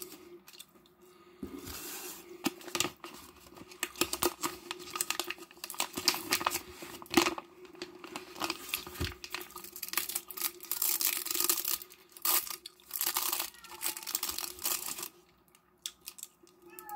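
Plastic packaging of seafood sticks being torn open and crinkled in the hands: a long run of irregular crackling and rustling that starts about a second and a half in.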